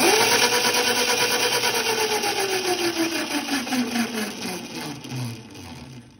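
Razor quad's upgraded 36 V 500 W electric motor spinning the raised rear axle through an 8 mm chain and sprockets. Its whine climbs quickly at the start, then slides steadily down in pitch over about four seconds and fades near the end. It is a stand test of the new 10-tooth/54-tooth gearing, and it runs out pretty good.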